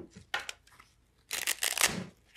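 Hands working a camera backpack's side-door pocket: a few light clicks, then a short rasping rustle of nylon fabric about a second and a half in.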